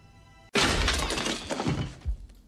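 Faint, high, held music tones, then a sudden loud crash about half a second in, with a shattering, breaking noise that fades over about a second and a half.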